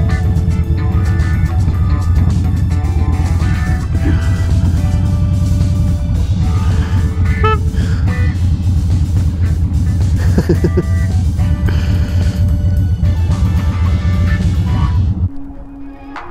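Background music with held melody notes over the steady low drone of a Harley-Davidson Dyna Street Bob underway. Both stop abruptly near the end.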